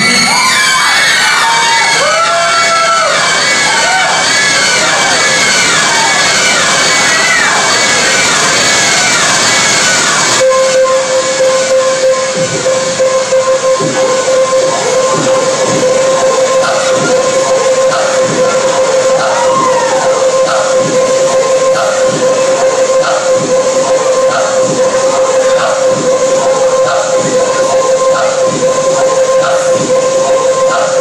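Live jazz-funk band opening a slow song. For about ten seconds it plays warbling, gliding high tones. Then it switches abruptly to one steady held tone with a regular pulsing figure over it.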